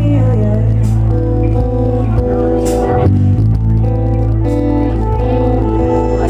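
Live pop band playing: acoustic guitar and electric bass over drums, with a strong, steady bass line and occasional cymbal strikes.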